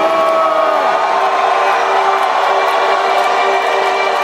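Sustained electronic synth chord held loudly through an arena sound system, over crowd noise, with a few rising and falling cries near the start.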